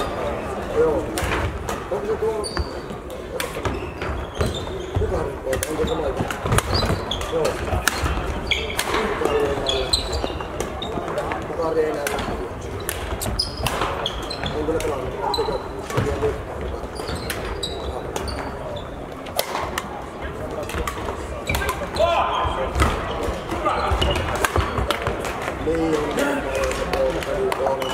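Busy badminton hall: many short sharp racket hits on shuttlecocks and footfalls on the court floor from play on several courts, with voices carrying through the large echoing hall.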